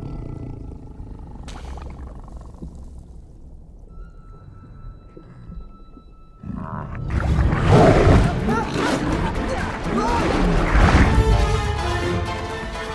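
Film soundtrack for an underwater chase: quiet, tense music over a low rumble, then, about six and a half seconds in, a sudden loud burst of dramatic chase music and sound effects that stays loud.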